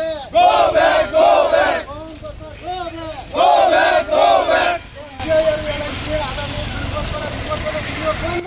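A crowd of marchers shouting protest slogans together, in two loud shouted bursts in the first five seconds, followed by quieter, steadier group chanting over a low rumble.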